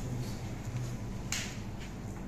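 A sheet of paper being handled, with one short crisp rustle a little past halfway, over a steady low hum.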